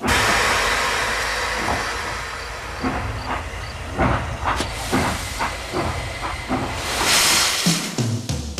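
Steam train: a sudden loud release of hissing steam, then chuffs about a second into the second half that come quicker and quicker as the engine gets under way, and another rush of steam near the end.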